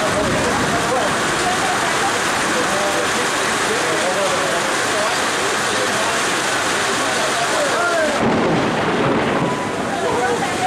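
Steady rain falling, with people's voices chattering in the background.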